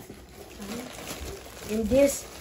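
Plastic wrapping crinkling and rustling as it is pulled out of a cardboard box, with a short voice sound near the end.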